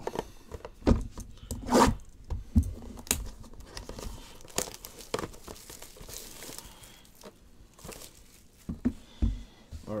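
Plastic shrink wrap crinkling and tearing as a sealed trading-card box is unwrapped by hand: irregular rustles and sharp snaps, the loudest about one and two seconds in.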